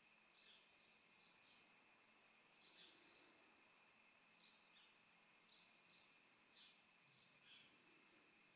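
Near silence, with faint short bird chirps, about a dozen scattered through, over a faint steady high whine.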